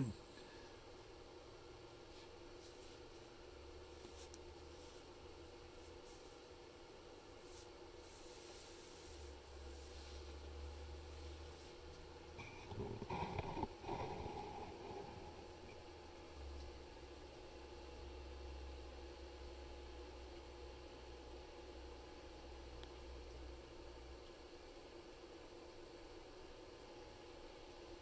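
Breville air fryer oven running on high broil with a faint, steady hum. A brief, louder noise comes about halfway through.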